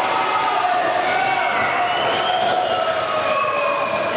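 Soundtrack music: long melodic lines that slowly glide up and down in pitch over a light, regular beat, with no words.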